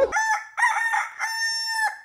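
Rooster crowing cock-a-doodle-doo as a dubbed-in sound effect: a few short notes, then one long held note that ends just before the cut, with no room noise behind it.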